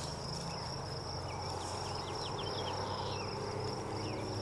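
An insect trilling steadily in a high, even, pulsing song, with a few short faint bird chirps through the middle.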